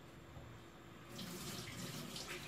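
A steady hiss like running water starts about a second in, over a low room background.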